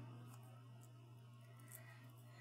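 Near silence: room tone with a steady low hum and a couple of faint ticks as paper pieces are handled.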